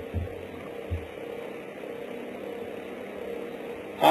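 Steady electrical mains hum with hiss in the recording, and two soft low thumps in the first second.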